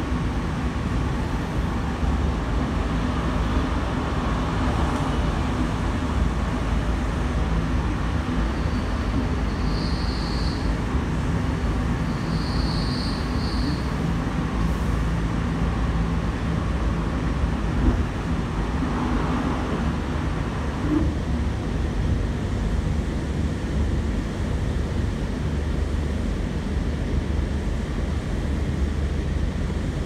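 Inside a Sydney Trains K-set double-deck electric suburban train running at speed: a steady rumble of the wheels on the rails and carriage noise.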